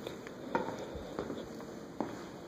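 Footsteps going down tiled stair treads: a few soft, short steps about half a second apart.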